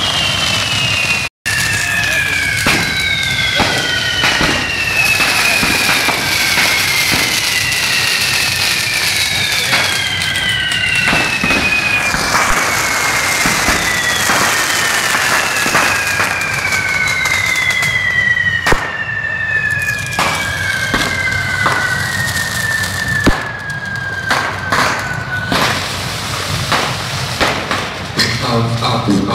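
Fireworks hissing and crackling continuously, with several long whistles overlapping one another, each falling slowly in pitch over several seconds. A few sharp bangs break through.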